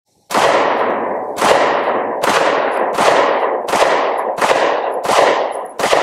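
A Springfield Armory Hellcat 9mm micro-compact pistol fired in a steady string of single shots, roughly one every three-quarters of a second. Each shot has a long echoing tail.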